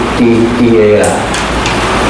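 A man's voice speaking in short phrases over a steady background hiss.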